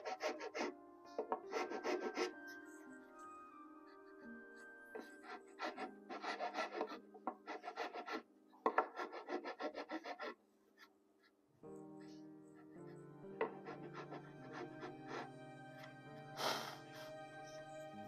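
Hand sanding of a wooden table rail: quick back-and-forth strokes of sandpaper in several short bursts, mostly in the first half, over steady background music.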